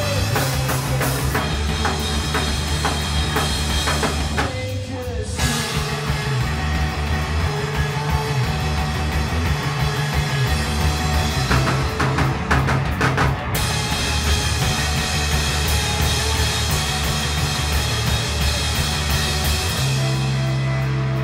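Live rock band playing: a drum kit with heavy cymbal work over overdriven bass and electric guitar. The drums and cymbals drop out briefly about five seconds in, then come back in.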